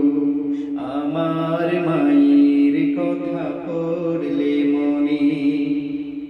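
A male voice singing a Bengali Islamic song (gojol) without instruments, drawing out long melismatic notes over a steady held tone underneath.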